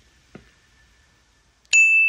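Near silence with a faint tick, then near the end a single bright ding that rings for about half a second: an edited-in transition sound effect.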